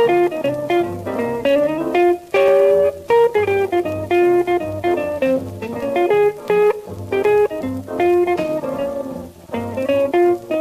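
Orchestral instrumental break from a 1949 Mercury 78 rpm record, with no singing. A lead instrument plays a melody of short, distinct notes over a steady, repeating bass line.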